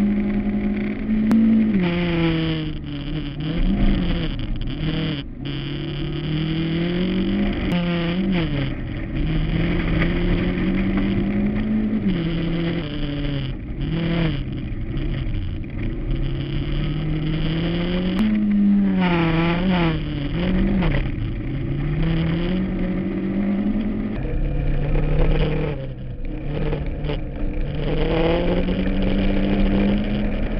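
Toyota rally car's engine heard from inside the cabin at stage pace on gravel. Its pitch climbs steadily through the gears and drops sharply at each shift, with quick rises and falls in revs through the corners, over a constant rumble of tyres and gravel.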